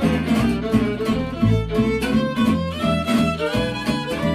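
Gypsy jazz played live on acoustic instruments: a fiddle bows a moving melody over a gypsy-jazz guitar strumming steady rhythm chords.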